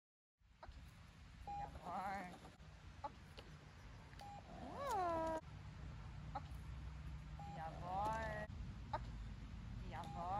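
A Belgian Malinois whining, four high rising-and-falling whines every two to three seconds, with short squeaky notes between them, over a low rumble.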